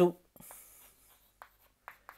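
Chalk writing on a chalkboard: a short faint scratching stroke, then a few light ticks as the chalk taps and lifts.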